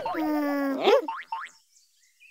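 Cartoon comic sound effects: a wobbly boing tone ends just as a long pitched tone starts, sliding down for most of a second. A couple of quick rising whoops follow, then about half a second of near silence.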